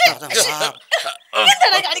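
A person's voice in short, choppy vocal sounds, quick repeated syllables broken by brief gaps.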